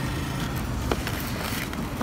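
Steady low rumble of a car on the move, heard from inside the cabin, with a single sharp click about a second in.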